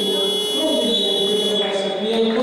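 Basketball hall's game buzzer sounding once: a steady, high-pitched electronic tone that cuts off about three-quarters of the way through, over fans chanting.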